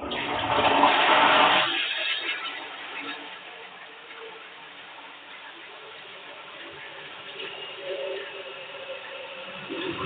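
Water rushing in a small tiled bathroom: a loud gush for about the first two seconds, settling into a steady, quieter flow.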